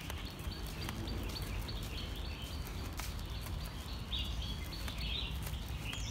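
Outdoor park ambience: birds chirping faintly over a steady low rumble, with a few soft clicks.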